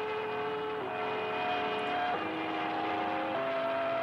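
Gong Station numbers-station recording: a slow sequence of chime tones, each held about a second and a quarter before stepping to a new pitch.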